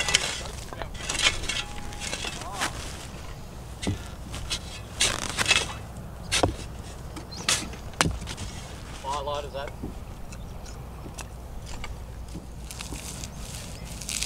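Shovel digging into sandy soil: the blade scraping and cutting into the earth in irregular strokes, with a few sharp knocks.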